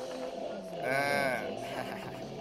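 A single wavering, voice-like cry that rises and then falls in pitch, lasting under a second in the middle.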